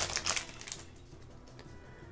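Brief crinkle and click of a foil trading-card booster pack as the cards are slid out of the wrapper, dying away within about half a second to a quiet stretch.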